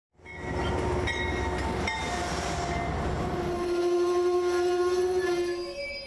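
A train rolling past with a low rumble, then its horn sounding one long note that fades out near the end.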